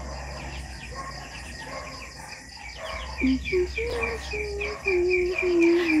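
Night insects chirping outdoors: a steady run of short, high chirps, about four a second. A low steady hum lies beneath them.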